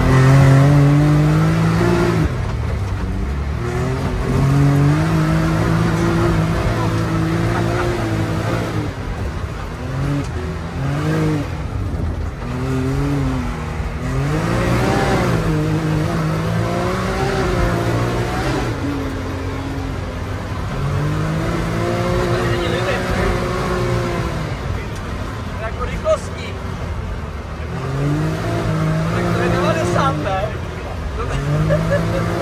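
Can-Am Maverick side-by-side's Rotax V-twin engine driven hard, heard from inside the cabin, its revs climbing and dropping again and again through the gears and bends. A single sharp knock comes late on.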